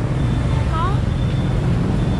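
Steady low rumble of street traffic, with a child's single short spoken word about a second in.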